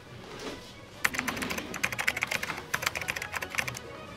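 Typing on a computer keyboard: a quick, dense run of keystrokes starting about a second in and stopping just before the end.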